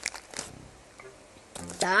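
A few light clicks and rustles of small chocolate pebbles being placed by hand into a glass mug of crushed Oreo crumbs, in the first half-second. Near the end a boy's voice rises in pitch.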